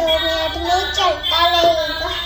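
A children's song with a sung melody, played electronically through the music steering wheel of a toy ride-on swing car.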